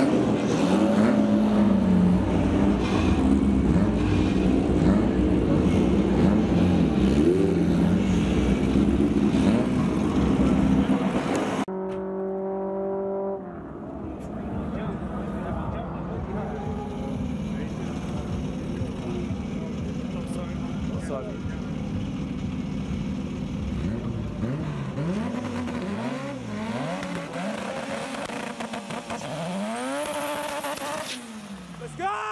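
Drag-race car engines idling and revving, loud for the first twelve seconds, then dropping suddenly to a quieter idle. Near the end the turbocharged Honda del Sol's engine revs up and down repeatedly for its burnout.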